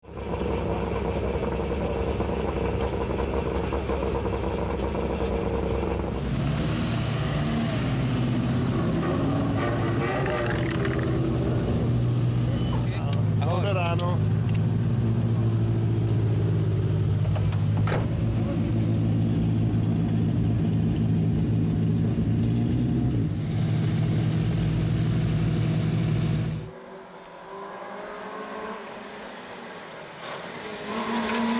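Citroën C2 rally car's engine running steadily at idle, heard close up around the cockpit, with voices over it. A few seconds before the end the sound drops suddenly to a quieter, more distant level.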